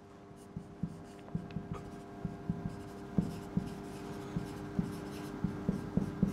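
Marker pen writing on a whiteboard: a string of short, quiet strokes and taps as words are written out.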